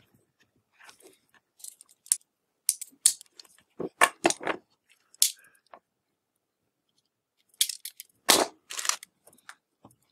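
Scattered small clicks and rustles of insulated hook-up wire, crimp quick-disconnect terminals and hand tools being handled on a wooden workbench while wiring a power switch. The clicks come in two clusters, with a quiet spell of about two seconds between them.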